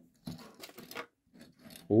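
Greenlight 1/64-scale diecast pickup truck pushed along a mat, its wheels giving a faint scratchy rubbing in two short stretches. The wheels drag as if the brakes were on: casting flash in a rear fender well is catching a tire.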